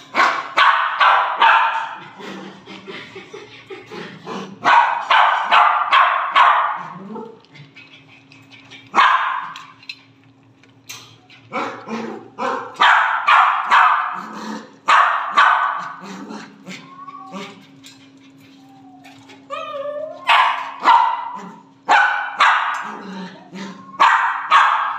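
A dog barking in bursts of several quick barks. About two-thirds of the way through there are a few whining calls that rise and fall.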